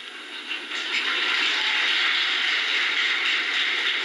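Audience applauding, a dense steady clapping that swells about a second in and holds.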